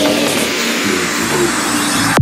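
Progressive psytrance breakdown with no kick drum: a synth sweep falling steadily in pitch over a noisy wash and held pad notes.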